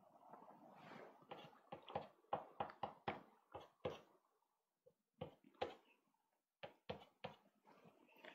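Faint, irregular taps and short strokes of a pastel stick dabbed onto pastel paper on a board. They come in quick clusters, with a pause a little past the middle.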